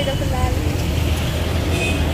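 Steady low rumble of city road traffic.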